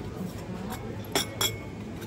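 Ceramic teacup and saucer clinking as they are set down on a table: two sharp clinks about a second in, a quarter second apart, each with a brief ring, after a fainter click.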